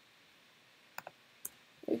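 Two short clicks from computer input, about half a second apart, on a quiet background: keys or a mouse being pressed while text is edited.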